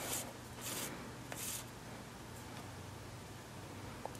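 Sewing thread being drawn through layers of plastic-coated shelf liner during hand blanket stitching: a few faint rubbing, rustling strokes in the first second and a half, then quiet.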